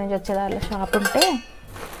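Stainless steel kitchen vessels clinking and knocking as they are handled, one giving a brief metallic ring about a second in, with a woman's voice over the first part.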